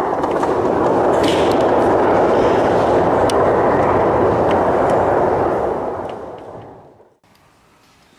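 Audience applauding, starting abruptly and fading out about six to seven seconds in.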